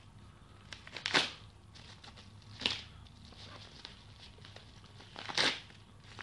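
A sellotaped envelope being opened by hand, in three short bursts of tearing and crinkling about a second in, midway and near the end, with faint crackles of paper between them.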